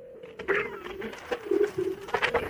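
Electric unicycle hub motor whining at a steady, slightly wavering pitch while rolling at speed, with gusts of wind on the microphone.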